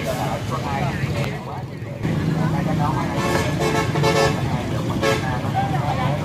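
Crowd voices and nearby motorbike traffic: an engine starts running steadily about two seconds in, louder than before, with horn-like tones over it.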